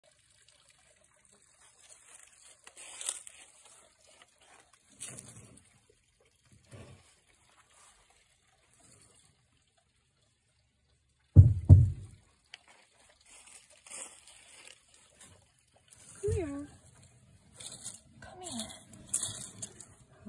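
Intermittent rustling and crackling of dry twigs and leaves, with one loud low thump a little past halfway and short voice sounds near the end.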